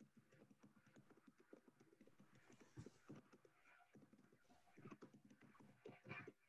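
Near silence: room tone with faint, irregular clicks and taps.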